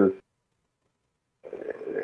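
A man's voice over a video call: a word trails off just after the start, then there is over a second of dead silence, then a faint sound builds back into speech near the end.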